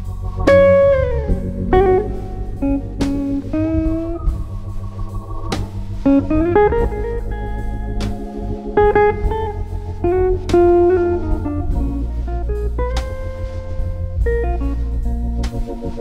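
Gibson L-5 archtop electric guitar playing a slow blues solo of single notes, with bent and sliding notes, over sustained Hammond organ chords.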